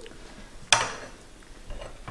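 A spoon striking a bowl once, a sharp clink about three quarters of a second in, with quiet room tone around it.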